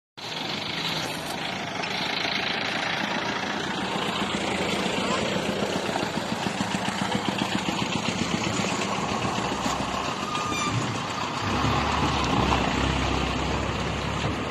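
Road traffic passing close by: a truck goes past, then a bus approaches with its engine's low rumble growing loud near the end as it passes.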